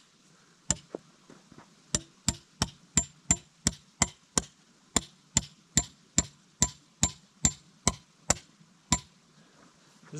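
Hammer pounding a metal tent stake into frozen ground: a steady run of sharp, ringing strikes, about three a second, stopping near the end. The ground is frozen solid, so the stake barely goes in.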